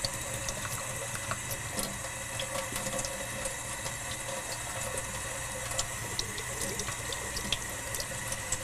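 Kitchen faucet running in a thin stream onto wet poster board in a stainless-steel sink: a steady splashing hiss with small scattered drips and patters, as ink is rinsed off a tempera resist painting.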